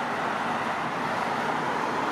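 Steady road traffic noise: the continuous hiss of cars' tyres and engines passing on the road.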